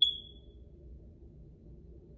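A single short, high beep from a light's touch switch as the light is turned on, fading within about half a second. After it there is only a faint low room hum.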